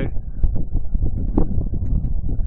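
Wind buffeting the microphone in a loud, low rumble, with a few light knocks about half a second and a second and a half in.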